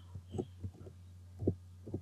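Computer keyboard keystrokes: about six dull, low taps as a word is typed, over a steady low electrical hum.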